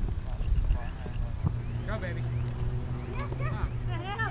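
Voices of players and spectators calling out across an outdoor soccer field, heard at a distance, over a low steady rumble. The voices come in about halfway through and grow stronger toward the end.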